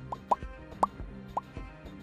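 Soft background music with four short, rising pop sound effects, the loudest a little under a second in, from an animated subscribe end-screen.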